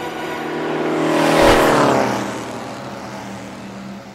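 A race car passing by at speed: its engine note builds to its loudest about a second and a half in, then drops in pitch and fades as it goes away.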